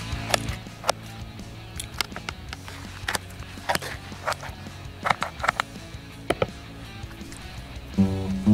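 Pizza scissors snipping through the crust of a calamari pizza on a metal tray: a run of sharp, irregular clicks and crunches. Background music plays underneath.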